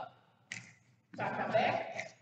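Speech only: a voice talking from about a second in, after a brief pause broken by a short hiss.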